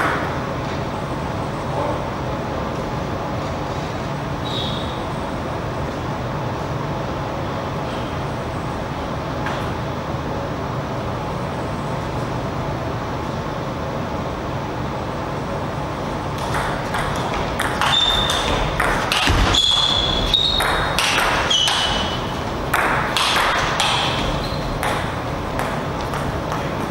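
Table tennis rally: a quick run of sharp ball clicks off the bats and table for about eight seconds, starting about two-thirds of the way in, with a few short high squeaks among them. Before the rally only a steady background hum is heard.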